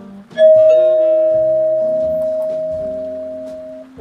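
Call chime from a digital queue management system's sound module, struck when the next ticket is called: a loud bell-like chime of a few notes, starting about half a second in and ringing out slowly over about three seconds.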